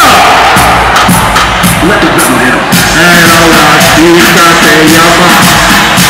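Loud live concert music with a steady beat and a crowd shouting and cheering over it. A sustained melody line comes in about halfway through.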